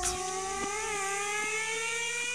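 A sustained electronic tone with overtones, gliding slowly and steadily upward in pitch, over a high hiss, part of a psychedelic sound collage.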